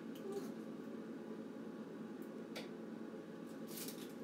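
Electric pottery wheel motor running with a steady low hum, with a couple of faint ticks and a brief rustle of dried eucalyptus stems just before the end.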